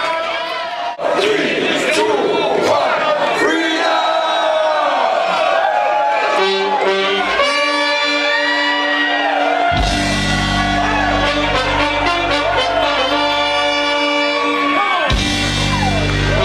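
Live reggae/ska band with a horn section playing held notes. A heavy bass line comes in about ten seconds in and breaks off for a moment near the end.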